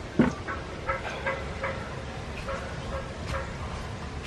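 A puppy barking once, sharp and loud, just after the start, then a few short, softer yips over the next second or so.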